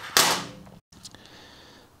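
Small metal airbrush parts handled and clinking on a steel bench: a click, then one brief hissy clatter, cut off suddenly.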